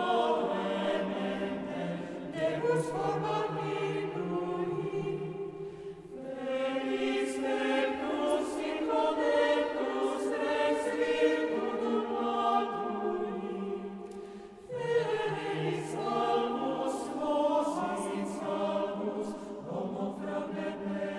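Mixed choir of women's and men's voices singing late-medieval sacred music a cappella, in long phrases with short breaks about 6 and 14.5 seconds in.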